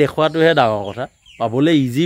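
A man's voice speaking in short phrases, with a chicken clucking close by.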